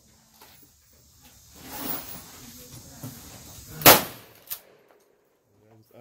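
Mossberg pump-action shotgun fired once about four seconds in, a single sharp shot, followed half a second later by a fainter clack. A voice starts up near the end.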